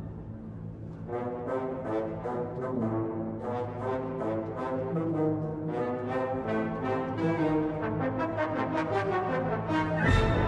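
Orchestral music: brass, horns and trombones, playing a melody over sustained low notes, slowly growing louder.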